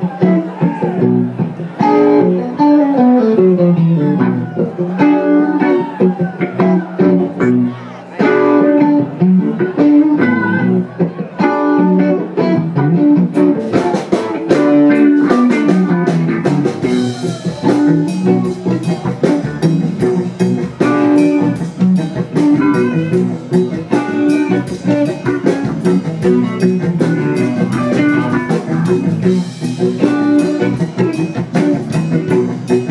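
A live blues-rock band plays an instrumental passage: electric guitar lead lines with descending runs over electric bass and drums. The cymbals come in brighter a little before halfway.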